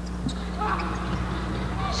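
Basketball arena background during play: crowd murmur with a few ball bounces on the hardwood court, over a steady low hum from the old broadcast recording.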